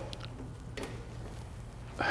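Quiet room tone with a steady low hum, and one faint short noise a little under a second in.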